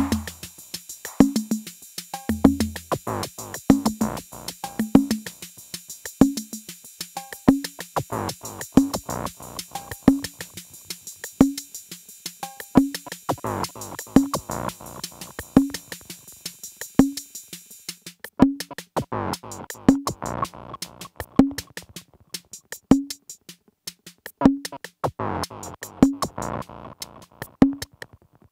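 Live electronic techno jam on drum machines (Behringer RD-8 and Arturia DrumBrute) and Arturia MiniBrute 2S analogue synthesizers: fast, dense hi-hat-like ticks over a low pitched thump about every second and a half. A high hissing layer drops out about two-thirds of the way through.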